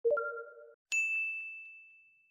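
Subscribe-button animation sound effects: a short low two-note chime as the button is clicked, then about a second in a bright bell ding that rings out and slowly fades.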